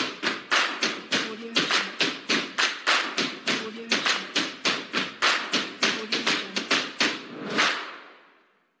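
Intro music built on a driving percussion beat: sharp, even hits about three to four a second, with a low sustained note underneath, fading out near the end.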